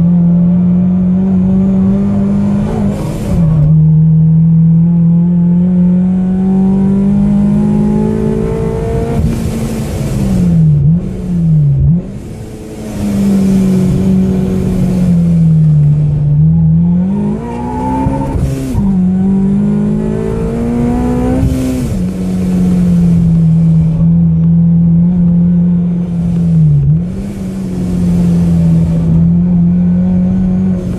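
Kraftwerks-supercharged 2007 Honda Civic Si's four-cylinder engine, heard from inside the cabin while driven hard. Its note climbs steadily, then drops off or dips sharply several times with gear changes and braking for corners, and goes briefly quieter about twelve seconds in.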